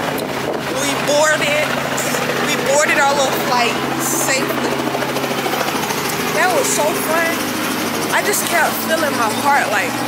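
A woman talking over a steady low mechanical hum.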